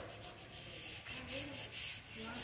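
Faint rubbing and rustling noise from a hand-held phone microphone being handled as it pans, with a faint distant voice in the second half.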